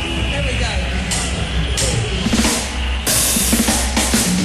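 Live band starting a reggae number: drum kit with cymbal strikes over a steady bass line, getting louder near the end.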